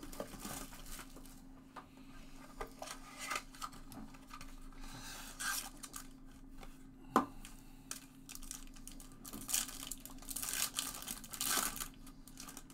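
Foil trading-card pack wrapper being torn open and crinkled by hand, in short scattered rustles, with one sharp tap a little past the middle.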